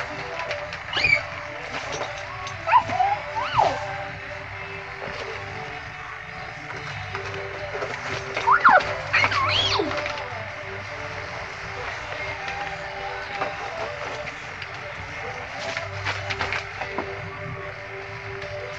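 Small children's brief squeals and vocal cries, three short outbursts with the longest about halfway through, over a steady background hum.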